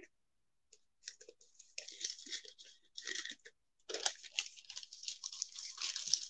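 Faint, irregular crinkling and rustling of a folded paper gift box being handled and opened, starting about a second in.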